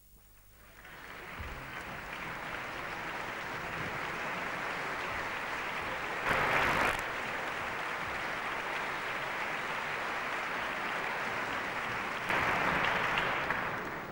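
Concert hall audience applauding: the clapping builds up about a second in and holds steady, with two brief louder swells about halfway through and near the end.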